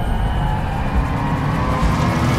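Cinematic logo-reveal sound effect: a deep, loud rumble with a tone slowly rising over it.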